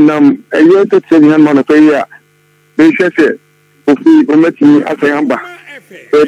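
Speech only: a man talking in short phrases with brief pauses, over a steady low electrical hum.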